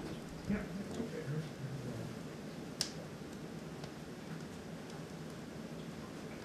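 Faint, steady noise of a wood-fired maple sap evaporator boiling, with one sharp click about three seconds in.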